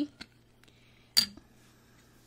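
A small glass bottle set down on a hard table: a light click, then about a second in one sharp clink with a brief high ring.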